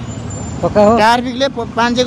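A person's voice talking in short phrases, starting about a third of the way in, over steady street and traffic noise that fills the gap before it.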